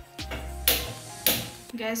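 Two short hissing bursts about half a second apart as a gas stove burner is turned on and lit, over soft background music.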